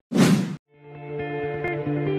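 A short whoosh transition effect, then soft ambient music with sustained notes fading in.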